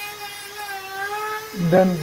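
Handheld rotary carving tool running with a steady high whine that wavers slightly in pitch as it carves a small piece; a spoken word is heard near the end.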